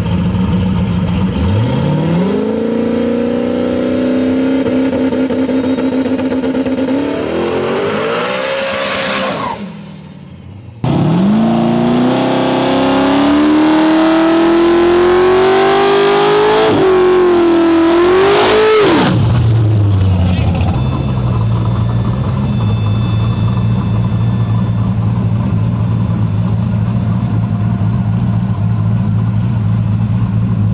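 Street drag cars launching at full throttle. An engine revs up sharply and keeps climbing in pitch. After a brief drop-out, another run climbs through a gear change, rises again and then lifts off about 19 seconds in. After that a car engine idles with a steady low rumble.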